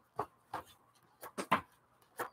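Pages of a journal being turned and handled while searching for a page: a few short, separate papery rustles and taps.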